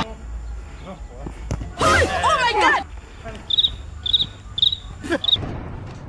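A brief loud shout from a player about two seconds in, over open-air background rumble. Later come four short, high chirps about half a second apart.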